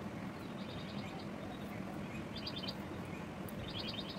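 A small bird chirping in short quick trills three times, over a steady low background hum.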